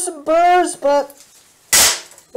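A man's voice speaking briefly, then one short, sharp metal clank near the end, loud and ringing across the whole range.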